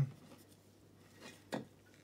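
Gloved hands handling vinyl figures and a can on a shelf: faint rubbing, then a single light tap about one and a half seconds in as something is set down.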